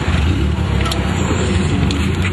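Drift car's engine running steadily at idle, a low, even hum heard from inside the cabin.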